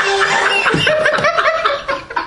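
Loud human laughter, turning into a run of short, quick ha-ha syllables in the second half and easing off near the end.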